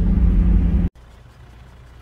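Low engine and tyre rumble inside a 4x4's cabin driving on a gravel track, cutting off abruptly about a second in, followed by faint, quiet outdoor background.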